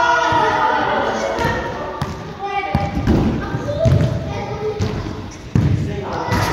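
Several dull thuds of a soccer ball being kicked and bouncing on artificial turf in a large indoor hall, with children's voices over the start.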